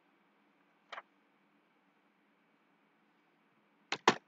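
Two sharp single clicks of a computer mouse over faint room hiss, one about a second in and a louder one near the end.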